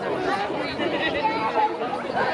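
Chatter of a crowd of guests talking at once, many overlapping voices with no single speaker standing out.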